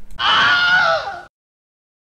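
Wolf howl: one call of about a second, held on a steady pitch and then falling at the end before it cuts off abruptly.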